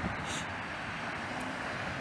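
Steady low background noise with no clear events, and a brief breathy hiss about a third of a second in.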